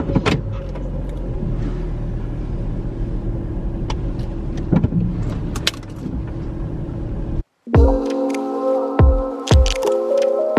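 Steady rumble of a car cabin with the engine running, with a few small clicks and knocks of handling. About seven and a half seconds in it cuts off abruptly and gives way to music with a held synth chord over a regular beat.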